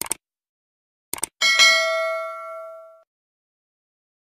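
Subscribe-button animation sound effect: quick mouse clicks at the start and again about a second in, then a single bright bell ding that rings out and fades over about a second and a half.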